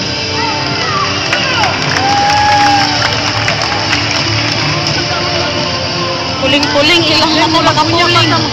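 Music playing through a hall's loudspeakers under the chatter and calls of a crowd, with a burst of shrill shouting and cheering in the last second or two.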